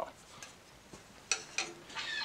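A faint click, then two sharper light taps a little past a second in, as a wooden push stick is handled and set down on the bandsaw table.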